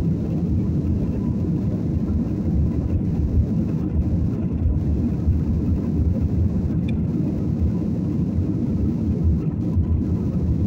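Jet airliner cabin noise in flight: a steady low rumble of engines and rushing air heard from a window seat inside the passenger cabin.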